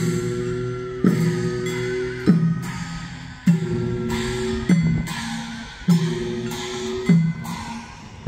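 Korean traditional military processional band music: a drum-and-gong stroke about every 1.2 seconds, each one ringing on, under a long, wavering held wind tone.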